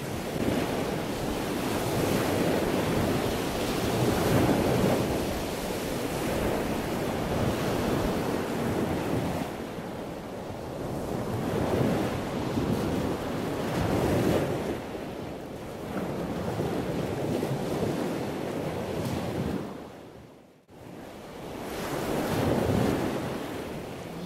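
Rushing water noise like breaking surf, swelling and easing every few seconds. It dips almost to quiet about twenty seconds in.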